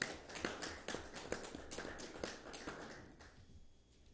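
A small group applauding with their hands, dying away a little past three seconds in.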